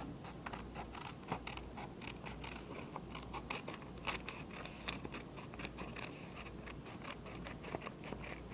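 Sheet of paper being handled, with irregular small crackles and clicks several times a second.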